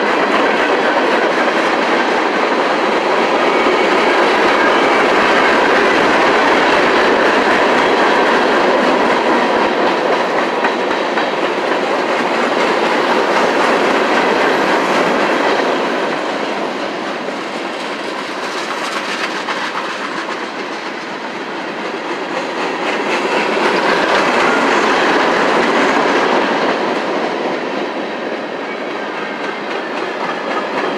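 Freight train of open-top hoppers, tank cars and covered hoppers rolling past close by: steel wheels clattering over the rail joints and the cars rattling. The noise is loud and steady, easing a little in the second half and swelling again as further cars go by.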